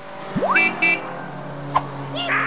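Cartoon sound effects: a quick rising swoop, then two short, high car-horn toots in quick succession over a steady low hum.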